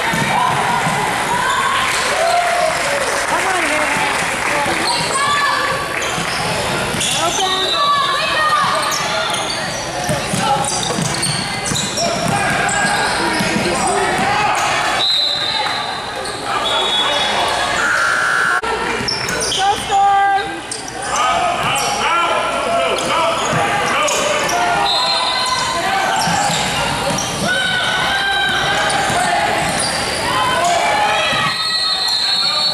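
A basketball bouncing on a hardwood gym floor during a game, with players' and spectators' voices throughout.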